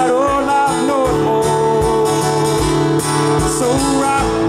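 Acoustic guitar strummed in a country rhythm, with a man singing over it.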